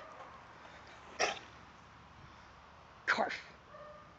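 A Rottweiler giving short, sharp barks: one about a second in, then two in quick succession near the end.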